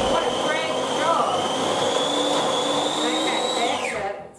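Electric countertop food processor running, its motor whining steadily as it churns a thick, sticky date-and-walnut mixture. The whine creeps slightly higher, then falls away near the end as the motor is switched off and winds down.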